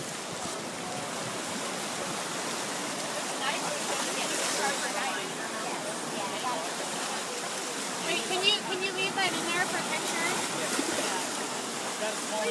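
Surf washing in at the water's edge, a steady rush, with people's voices talking over it and a livelier burst of higher voices about eight seconds in.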